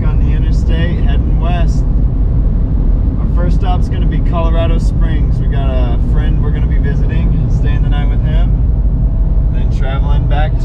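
Steady low road and engine rumble inside a moving Jeep Liberty at highway speed, with voices talking over it for much of the time.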